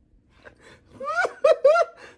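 A person laughing in short, breathy, gasping bursts, starting about a second in.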